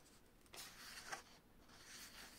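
Faint rustle of book pages being leafed through, lasting about a second from half a second in, with one sharper flick near the middle.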